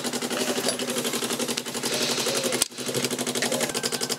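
Electric fuel pump on a Rover P6 V8 ticking rapidly and evenly with a low hum as it runs with the ignition on, briefly dipping about two-thirds of the way through.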